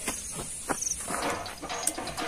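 Insects chirping: a short, rapidly pulsed high chirp about a second in, over a steady high hiss.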